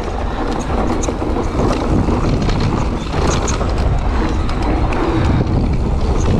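Mountain bike riding over a dry dirt trail: tyres rolling on the dirt and the bike rattling, with scattered small ticks, and wind buffeting the microphone.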